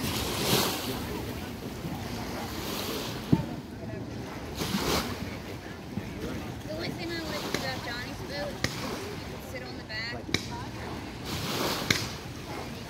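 Wind on the microphone and water noise at the riverbank, with a few sharp, distant fireworks pops; the loudest comes about three seconds in.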